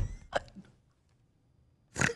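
Short, stifled bursts of laughter: two quick breathy bursts at the start, a pause, then another burst near the end.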